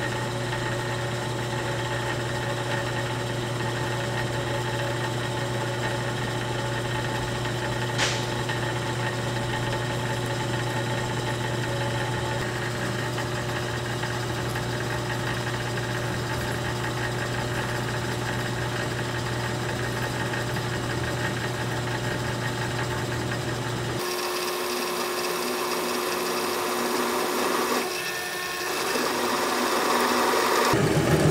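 Drill press motor running steadily with a low hum as a freshly sharpened twist drill bit cuts into mild steel with cutting oil, starting with no pilot hole. There is one sharp click about a quarter of the way in, and near the end the sound changes suddenly as the low hum drops away.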